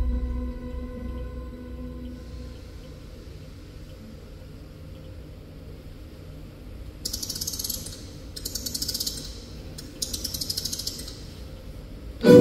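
The last notes of dark soundtrack music die away over a low rumble. In the second half come three short bursts of rapid mechanical ratcheting clicks, like a clockwork mechanism being wound.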